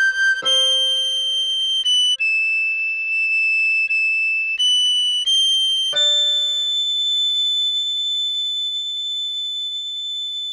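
Recorder playing a short run of high sustained notes, then one long held high A from about six seconds in. Beneath it a keyboard chord is struck twice: G major at the start and D major about six seconds in, each dying away.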